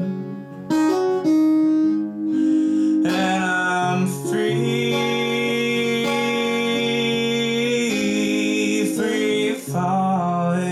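Strummed acoustic guitar with a man singing, holding long notes through the middle, with brief dips in level near the start and just before the end.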